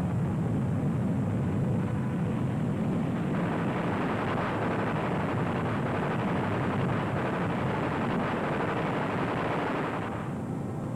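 Steady, dense roar of aircraft engine noise, growing fuller and brighter a few seconds in.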